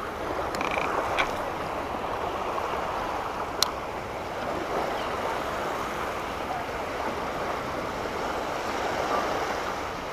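Small waves washing onto the shoreline with wind on the microphone, a steady rushing wash. A single sharp click about three and a half seconds in.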